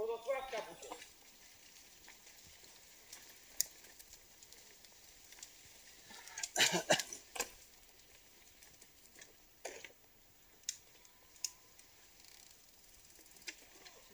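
Bicycles riding past on a sandy dirt track: a faint, even rustle of tyres with scattered sharp clicks and rattles, and a short cluster of louder rattles about halfway through. A voice is heard briefly at the start.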